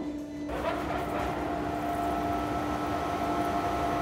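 Continuous miner running at the mine face as its rotating cutter drum cuts into rock: a steady mechanical din with a held droning whine, a higher whine joining about half a second in.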